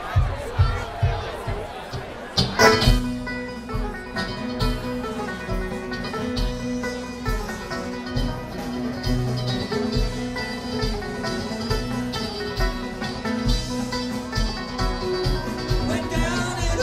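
A bluegrass band plays live through a PA: banjo, mandolin, acoustic guitar and electric bass with drums. A steady low beat carries the first couple of seconds, then the full band comes in loudly about two and a half seconds in and plays an instrumental passage.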